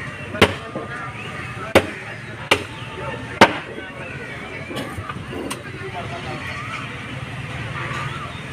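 A butcher's cleaver chopping pork on a wooden table: four sharp chops, about a second apart, in the first three and a half seconds, then two lighter strikes. Voices murmur behind.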